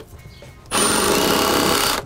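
Cordless impact driver driving a hex-head joist screw through a steel joist hanger into wood. It starts about two-thirds of a second in with a brief high whine, then runs steadily.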